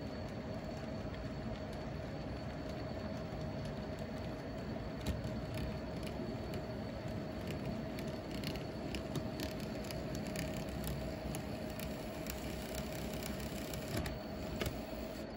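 N scale model freight train of tank cars rolling along the track: a steady hum with a patter of small clicks from the wheels on the rails, the clicks more frequent from about five seconds in.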